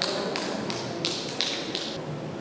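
A regular series of short, sharp taps, about three a second, stopping shortly before the end.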